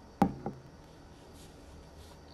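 Two knocks of a hard object set down on a tabletop, a sharp one followed by a lighter one about a quarter second later.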